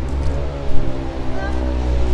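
A motor vehicle's engine running close by on the street, a steady low hum whose pitch sags slightly, then holds.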